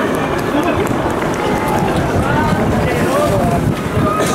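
Stadium crowd noise: many indistinct voices talking and calling out at once, with a few raised calls.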